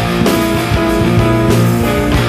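Grunge rock music: electric guitars playing sustained chords over a drum kit.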